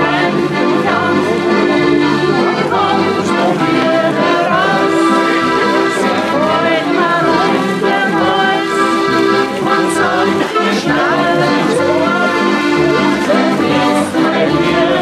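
Several diatonic button accordions (Steirische Harmonika) playing an Austrian folk tune together, with voices singing along.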